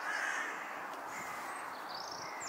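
Bohemian waxwings giving short, high, thin trilling calls, with a louder, harsher caw-like call from another bird at the start.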